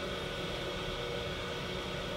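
Steady room hum and hiss of a hospital ICU room's ventilation and bedside equipment, with a few faint steady tones running through it.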